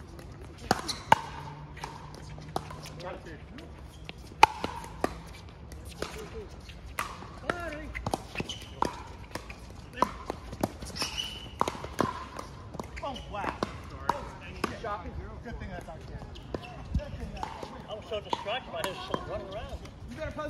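Pickleball paddles hitting a hard plastic ball: a run of sharp pops, each with a short ring, coming at irregular intervals. Some are loud and close, others fainter from neighbouring courts.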